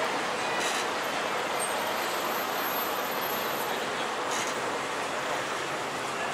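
Steady street traffic noise from passing road vehicles, an even wash of sound without breaks.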